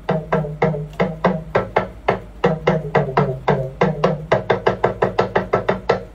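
Talking drum struck with a stick in a quick, even run of about five strokes a second, its pitch stepping between a higher and a lower tone. By the teacher's count, the phrase has one stroke too many.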